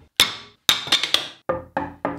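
Sharp wooden knocks and clacks, about seven in two seconds, each ringing briefly: a glued-up hardwood panel and its wooden clamps being handled and knocked together.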